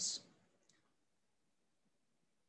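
A man's voice trailing off at the end of a word, one short faint click a little after, then near silence.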